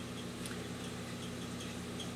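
Steady low hum with faint room noise and a few faint scattered ticks.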